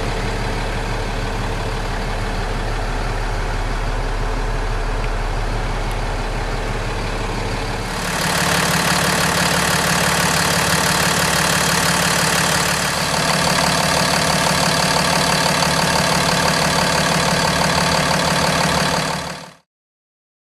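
2012 Peterbilt 337's diesel engine idling steadily, at first muffled as heard from inside the cab. About eight seconds in, at the open engine bay, it turns louder and brighter. It cuts off suddenly just before the end.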